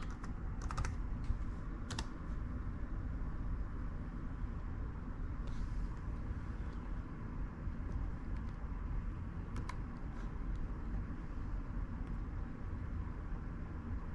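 A few scattered key and button clicks on a laptop keyboard, over a steady low hum.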